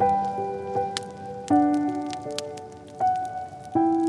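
Slow, soft solo piano music, with new notes and chords struck every second or so and left to ring, over the scattered pops and crackles of a wood fire.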